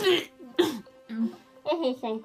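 Muffled voices of young women speaking and groaning through mouthfuls of marshmallows, with a cough-like splutter about half a second in.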